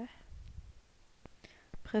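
A voice speaking French: a word trails off at the start, a quiet pause follows, and speech starts again near the end.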